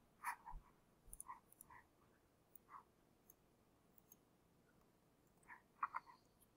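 Faint computer mouse clicks, a few scattered short clicks in otherwise near silence, with a louder pair close together near the end.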